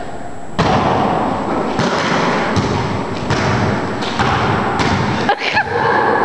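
Basketball bouncing on an indoor court floor, a thud roughly every second or so.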